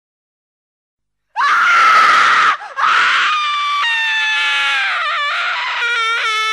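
Silence for just over a second, then a loud, high-pitched scream that slides downward. It breaks off briefly and goes on as a long wavering wail that sinks lower in pitch.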